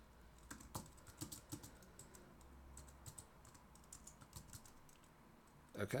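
Faint typing on a computer keyboard: a run of light, irregular keystrokes.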